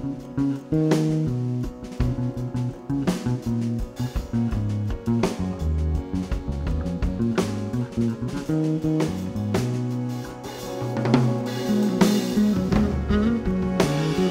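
Live band playing an instrumental passage with no singing: an electric bass guitar line under guitar and a drum kit keeping a steady beat. The music dips briefly about two thirds of the way in, then cymbals swell.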